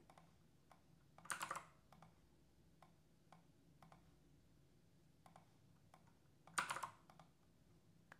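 Faint, scattered keystrokes and clicks on a computer keyboard and mouse, with two short louder flurries, one about a second in and one about two-thirds of the way through.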